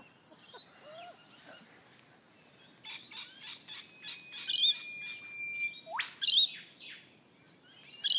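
Birds chirping and calling, among them an eastern whipbird: a long held whistle ending in a sharp rising whip-crack about six seconds in.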